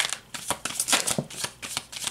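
A tarot deck shuffled by hand: a quick, irregular run of card flicks and clicks.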